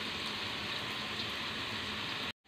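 Pieces of wild duck meat frying in ghee in a wok, giving a steady, even sizzling hiss.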